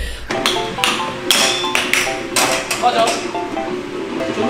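Light background music with a repeating melody, over a series of sharp plastic clacks from an air hockey puck being struck by mallets and hitting the table.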